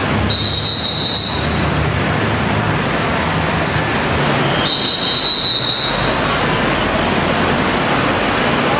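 Steady road-traffic noise with a high-pitched squeal that sounds twice, about half a second in and again near five seconds in, each lasting about a second.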